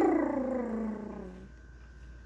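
A woman's wordless vocal sound: one long call that slides down in pitch and fades away over about a second and a half.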